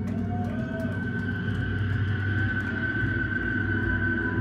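Electric guitar amplifier feedback: a sustained high whistling tone that swells and holds, over a steady low amp hum, with a few wavering tones early on.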